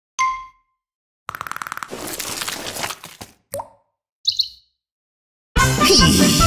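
A string of short cartoon sound effects separated by silences: a brief ding just after the start, a fast run of clicks about a second in that turns into a whoosh, then two short chirps, with cheerful music starting near the end.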